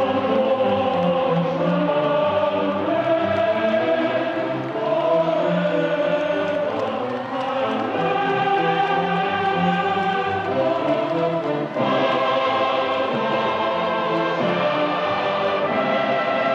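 A choir singing a slow song, holding long notes, with a new phrase starting near the end.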